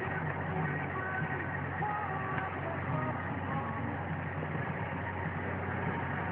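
Steady low drone of a car's engine and road noise heard from inside the moving car, with faint voices or sounds in the background.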